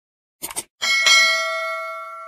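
A quick double click, then a bell chime with several ringing tones that rings out and slowly fades: the notification-bell sound effect of a subscribe animation.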